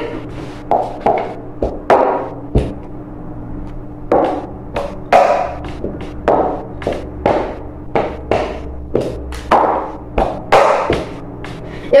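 Plastic bowls being picked up and set back down on a tabletop, a run of short knocks and taps about two a second.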